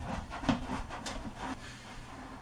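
Handling noise from a large CRT television being carried and set down on a tiled floor: footsteps, shuffling and a few separate knocks.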